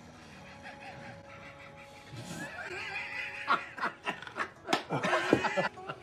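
People laughing: quiet for the first two seconds, then laughter starts and grows into repeated short bursts toward the end.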